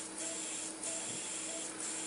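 Steady hiss in the procedure room with a low hum, and faint short beeps at one pitch recurring about twice a second.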